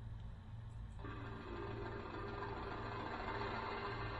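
Music with a steady low hum underneath; about a second in, a fuller layer of sustained tones comes in and swells slightly.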